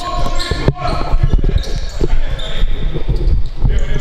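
Futsal ball being kicked and bouncing on a wooden sports-hall floor, with repeated thuds of feet and ball and short shoe squeaks, echoing in a large hall.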